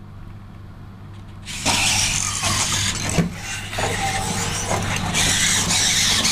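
Servo motors and gears of a Robosen Optimus Prime robot toy whirring as it moves its limbs through an exercise routine, starting about one and a half seconds in, with a brief higher whine near the middle.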